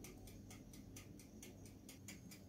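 Faint, rapid, even ticking, about seven or eight ticks a second, from the wind-up timer dial of an ern electric countertop oven counting down while it bakes.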